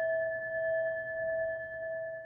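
A singing bowl ringing on after a strike, holding two clear steady tones with fainter overtones, slowly fading with a gentle waver in loudness.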